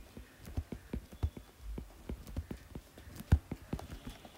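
Stylus tip tapping and ticking on an iPad's glass screen while digits are handwritten: an irregular run of light clicks, with one sharper click about three seconds in.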